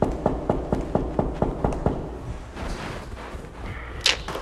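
Knocking on a dorm room door: about nine quick, evenly spaced knocks in the first two seconds, then a quieter wait.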